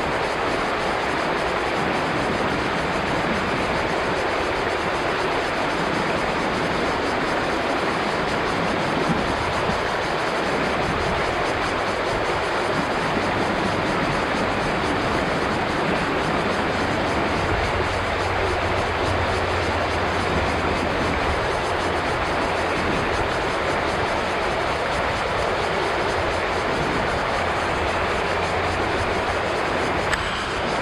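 Shallow river rushing over a rocky riffle: a loud, steady rush of water.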